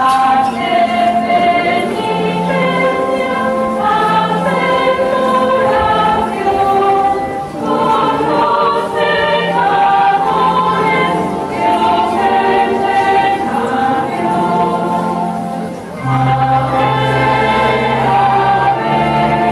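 Choir singing a hymn in several voices, in long phrases with short breaks about seven and a half and sixteen seconds in.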